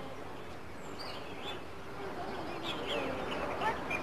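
Domestic ducks quacking outdoors, with short calls coming more often from about a second in.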